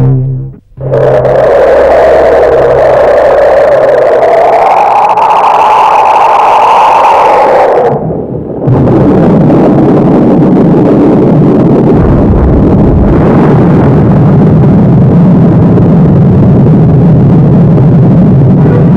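Loud synthesized title-sequence sound effects. A noisy whooshing swell rises and falls in pitch and cuts off about eight seconds in. After a brief gap, a dense, continuous low rumbling noise runs on.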